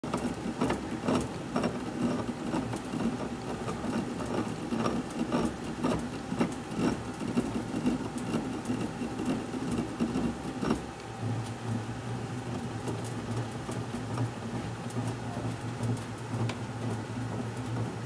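A DeMarini Prism+ composite softball bat is pressed and turned between the rollers of a hand-cranked bat-rolling machine, giving irregular clicks and creaks over a low hum: the sound of the composite barrel being broken in. After about eleven seconds the clicking mostly stops and a steadier low hum continues.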